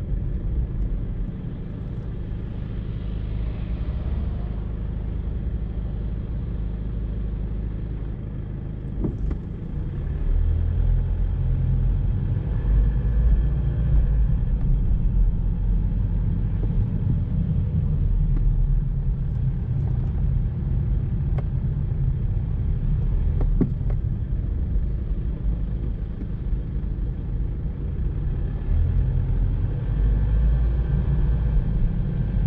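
Low, steady rumble of a car driving through town, engine and road noise, growing louder about ten seconds in. A couple of brief knocks are heard along the way.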